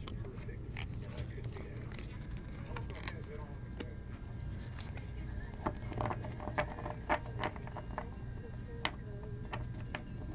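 Steady low hum with scattered light clicks and taps, a quick run of them about six to seven and a half seconds in.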